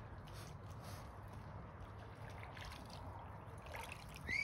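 Swans preening close by: soft, scattered rustling and nibbling of bills through feathers over a faint, steady outdoor rumble.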